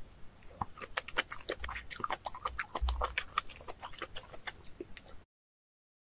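Close-miked wet chewing and biting of snail meat: a dense, irregular run of crackling mouth clicks and smacks. It cuts off abruptly to silence about five seconds in.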